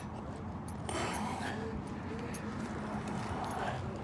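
Faint distant voices over a steady low outdoor rumble, with light footsteps on pavement.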